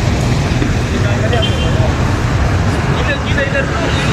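City street noise: a steady low rumble of road traffic, with faint voices of people nearby about a second in and again near the end.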